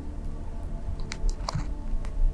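Background music with sustained low tones, and a few wet clicks in the middle from a California kingsnake's jaws working as it swallows a patch-nosed snake.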